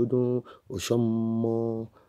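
A voice speaking, then drawing out one syllable on a steady pitch for about a second, in a chant-like way.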